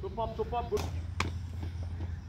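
Two sharp knocks of a cricket ball being struck or caught, the first just under a second in and the second about a second in, after a brief shouted call.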